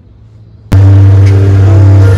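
Music bursting in suddenly and very loud a little under a second in, played through an Audison Thesis car audio system with two subwoofers in the boot: deep, steady bass notes under several held higher tones. Before it there is only a faint low hum.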